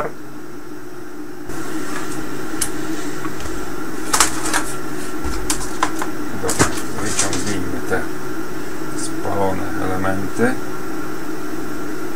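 Small clicks and knocks of hands handling an open metal amplifier chassis and multimeter test leads, over a steady hum that gets louder about a second and a half in.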